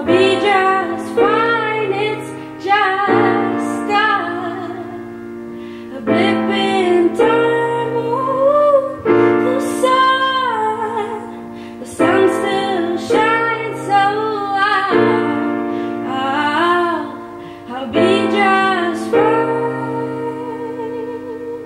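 A woman singing a slow song while accompanying herself on a grand piano, with sustained chords struck every second or two under the sung melody.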